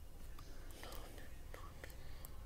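A person's voice whispering faintly, with a few soft clicks in the second half.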